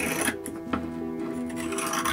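Scissors cutting through fiberglass cloth, with two snips in the first second, over background music.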